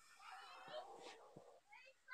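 A hen's faint, wavering call through about the first second, with a few light taps.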